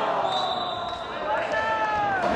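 Players shouting and calling out during an indoor football match, echoing in a large sports hall, with one drawn-out falling call near the end.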